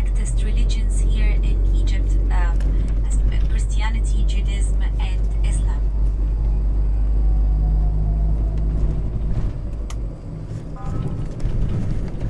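Inside a moving tour bus: the steady low rumble of the engine and road, which eases about ten seconds in, with voices talking over it during the first few seconds.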